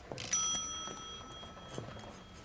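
A small bell struck once, ringing out clearly and fading over about a second and a half.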